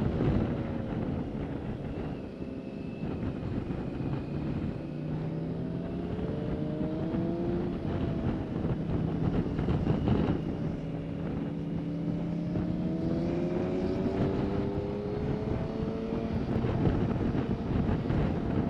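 BMW K1600GT's inline six-cylinder engine under way, its note dipping and then climbing twice as the bike eases off and pulls away again. Wind noise on the helmet-mounted microphone runs underneath.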